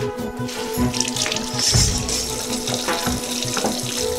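Water running from a kitchen tap into the sink, strongest from about a second in, over background music.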